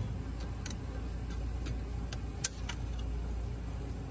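Light metallic clicks of channel-lock pliers on a radiator hose clamp as it is worked back and forth along the hose, with one sharper click about two and a half seconds in. A steady low hum runs underneath.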